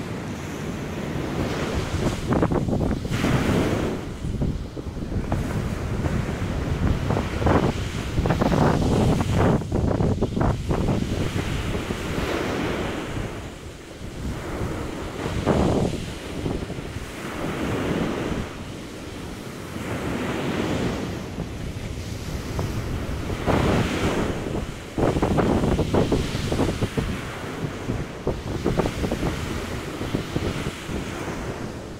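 Ocean surf breaking and washing up a sand beach, swelling and easing every few seconds, with wind on the microphone.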